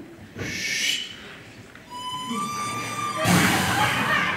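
A music or sound-effect cue played over the hall's speakers: a brief swell near the start, then a held whistle-like tone that steps up slightly, then a loud rushing noise from about three seconds in.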